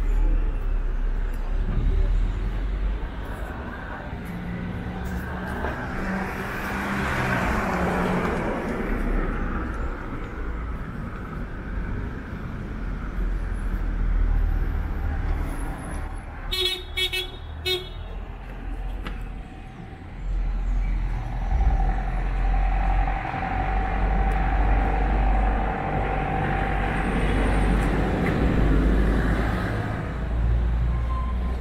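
City street traffic with cars passing and a steady low rumble. About seventeen seconds in, a car horn gives a quick run of short toots.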